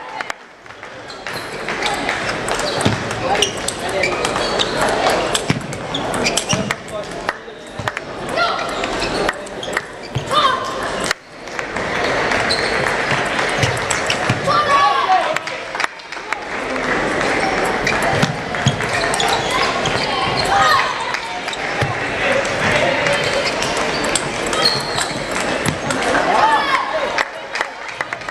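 Table tennis balls clicking off bats and table in quick rallies, with short breaks between points, over a steady hubbub of voices and balls from other tables in a large hall.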